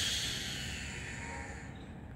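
Greater coucal giving its harsh, hissing call: one loud rasping hiss that starts abruptly and fades over about a second and a half. It is the bird's scary voice, which the observer takes for a warning to keep predators away from its nest.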